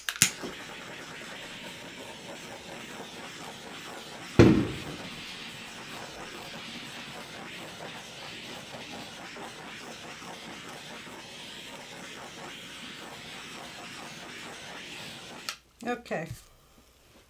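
Handheld butane torch lit with a click and run steadily, a continuous hiss, as it is passed over wet acrylic pour paint to bring up cells. A single loud thump about four seconds in; the hiss cuts off shortly before the end.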